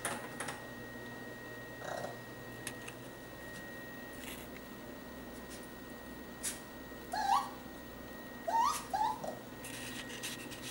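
Raccoon giving short rising calls, one about seven seconds in and two close together near the end, with faint scattered clicks in between.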